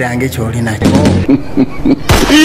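A man's voice speaking in Lugwere, broken by several sharp thuds, over a steady low hum that fades about a second in.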